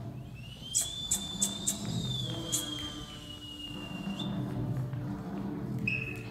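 A long whistle over orchestral stage-musical music: it slides up, holds and sags slowly down over about four seconds, with five sharp snaps in its first half and a short second whistle near the end.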